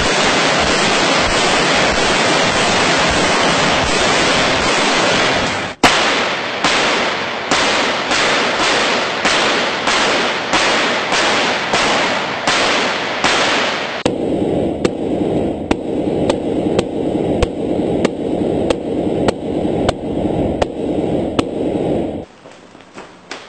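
AK-47 rifle fire into an armored SUV's windshield: a dense, continuous rattle of rapid shots for about the first six seconds, then sharp single shots about two a second. For roughly the last third the shots sound muffled, as heard from inside the armored car.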